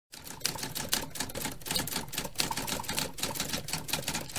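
Typing sound effect: a fast, dense clatter of typewriter-style key clicks that starts abruptly after a moment of silence.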